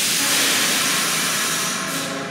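Subway car's air brake system venting compressed air in a loud, steady hiss that eases off near the end.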